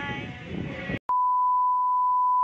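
The tail of a voice over room noise, then a sudden cut about a second in to a steady, unwavering test-tone beep, the sound that goes with a TV colour-bar test card.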